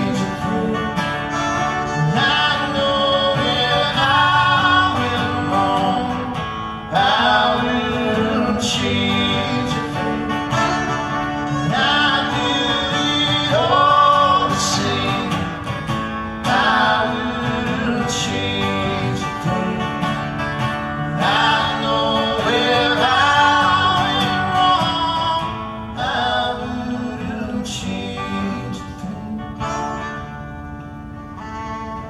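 Live fiddle and strummed acoustic guitar playing together in a folk-country song, with the fiddle carrying gliding melodic phrases over the guitar.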